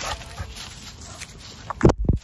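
Dogs at play, their feet rustling through dry leaves, with a short loud dog bark near the end.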